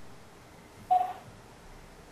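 A single short beep about a second in, over faint background hiss on a video-call audio line.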